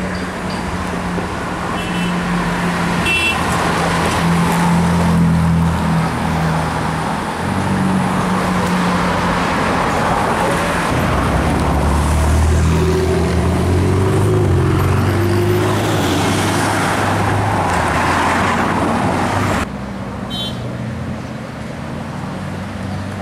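Ferrari and other supercar engines driving in city traffic. The engine note rises and falls as the cars rev and pass, and the sound drops abruptly to a quieter traffic scene near the end.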